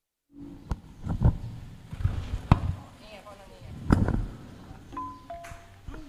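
Thai barrel drums of a piphat ensemble struck by hand in a few separate heavy, deep strokes, the loudest about two and a half and four seconds in.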